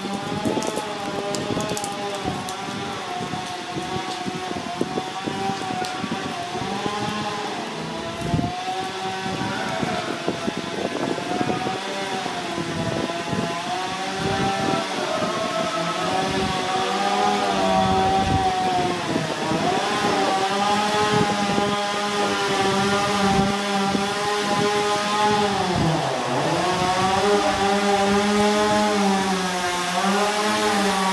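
Small petrol power saw running continuously under varying load, its engine pitch wavering and dipping sharply before recovering near the end.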